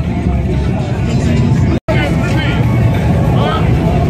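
Bagger motorcycle engine running at idle, a low, uneven pulsing that sits under crowd voices. The sound drops out for an instant a little under two seconds in.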